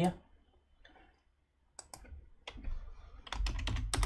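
Computer keyboard typing. There are a few separate clicks about two seconds in, then a quick run of keystrokes near the end as a short word is entered.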